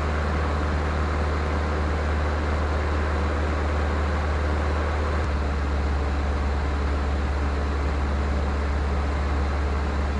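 Luscombe 8A light airplane's engine and propeller droning steadily in flight, heard inside the small cabin: a low, even hum with hiss above it.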